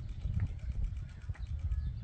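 Uneven, gusty low rumble of wind on the microphone, with a few faint rustles. No rocket motor ignition is heard.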